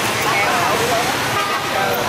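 Busy street ambience: overlapping voices of a crowd over steady motorbike and traffic noise.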